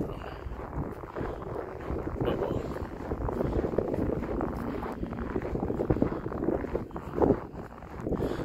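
Road traffic on a snowy street: a car passing through an intersection, its engine and tyres on snow swelling in the middle, with wind buffeting the phone's microphone.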